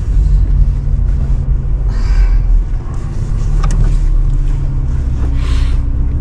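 Car cabin noise while driving with the window open: a steady low engine and road rumble, with two brief hissing swells of outside noise, about two seconds in and near the end.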